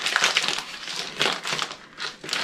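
Brown kraft paper mailer bag crinkling and crackling as it is handled and pulled open, dying away shortly before the end.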